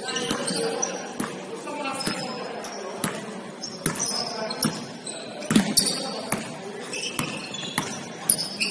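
Basketball being dribbled on a hardwood gym floor: repeated bounces, roughly one a second.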